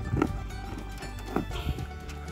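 Background music over a horse eating shelled yellow corn and feed pellets from a metal wheelbarrow, with a few short crunching, rustling sounds of grain as it noses and chews.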